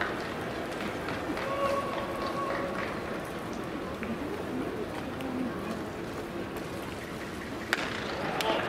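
Ballpark crowd murmuring steadily with scattered voices, waiting on the first pitch. A single sharp crack comes near the end.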